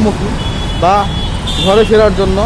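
A voice talking over the steady low rumble of heavy, slow-moving city road traffic.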